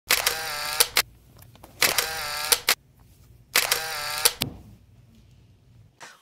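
A camera-like sound effect repeated three times: each time a short, steady whirring tone lasting under a second, ending in one or two sharp clicks.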